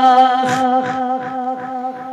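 A steady hummed vocal drone, the backing of an unaccompanied devotional naat, holds one pitch while the lead singer pauses between lines, slowly growing fainter. Soft low falling tones come about every 0.4 s under it.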